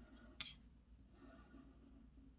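Near silence, with the faint scratch of a felt-tip marker drawing lines on paper and one short tick about half a second in.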